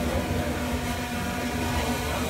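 Intel Falcon 8+ octocopter hovering: a steady hum from its eight electric motors and propellers, holding one constant pitch.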